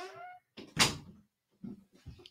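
A dog whining briefly, then a single loud thump about a second in.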